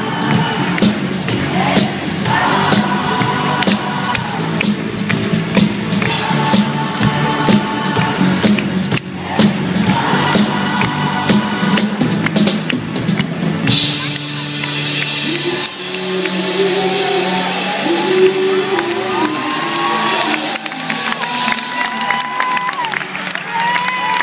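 Live rock band with drums, guitars and backing singers playing on stage, heard from the audience. A driving drum beat runs through the first half, then drops away, leaving sustained chords and a gliding melody line.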